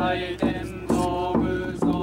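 Buddhist sutra chanting by several voices in a steady, even rhythm, a fresh accented syllable about twice a second.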